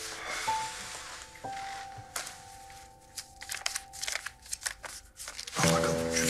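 Soft background music with held notes, under crisp rustling and ticking of paper banknotes being handled and counted out from about two seconds in. A fuller, louder musical chord comes in near the end.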